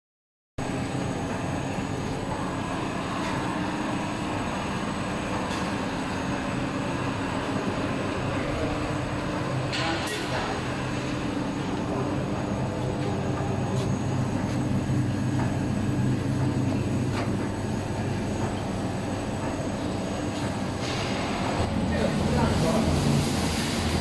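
Foil coating machine line running: a steady machine hum and rolling noise from its rollers and drives, with a thin high whine over it and a few sharp clicks, the clearest about ten seconds in.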